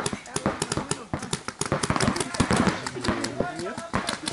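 Paintball markers firing in rapid, irregular strings of sharp pops, several shots a second. A voice shouts partway through.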